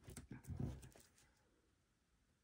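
Sticker sheets and a planner page handled on a tabletop as a sticker is peeled off and pressed down: a short cluster of paper rustles, clicks and a soft low scuff in the first second, then quiet.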